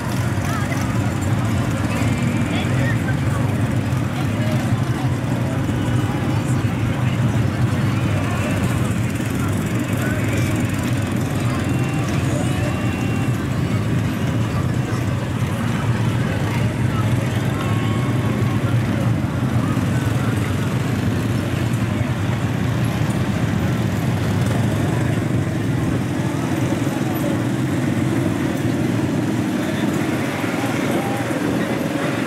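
Engines of a line of ATVs (four-wheelers) running as they roll slowly past in procession, a steady low hum, with people's voices mixed in.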